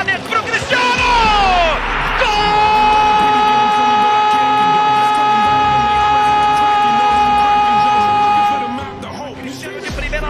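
A football TV commentator's goal cry: a few falling shouts, then one long drawn-out "gol" held on a single pitch for about six and a half seconds, stopping shortly before the end. Music plays under it.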